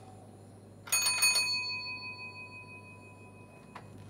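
Bicycle bell rung with a quick burst of strikes about a second in, then a ringing tone that fades away over about two seconds.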